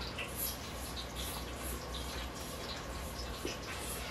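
A person chewing a freshly fried potato fry close to the microphone, with faint, short, irregular crunches and mouth clicks over a low steady hum.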